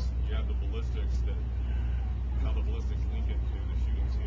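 A steady low rumble with faint, distant voices murmuring over it.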